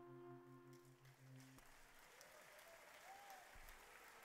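The held final chord of the music dies away about a second and a half in, and faint applause from a small audience starts up, with a voice or two.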